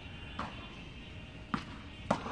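Tennis ball on a hard indoor court: two short, sharp knocks about a second apart, a racket hit and the ball bouncing during a rally.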